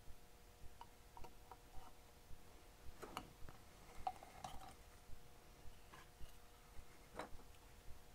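Faint, scattered clicks and ticks of small metal hand tools and wire being handled at a circuit board, the sharpest about three seconds in and again about seven seconds in. A steady faint hum runs beneath.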